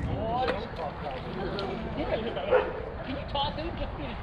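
Voices and laughter of players and onlookers at an outdoor softball field, with scattered calls across the diamond and a few faint knocks.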